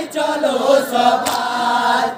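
Men's voices chanting a Muharram marsiya lament together in long, bending sung lines, with one sharp hit about a second in.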